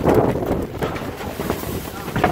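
Sandstorm wind buffeting the microphone in uneven gusts.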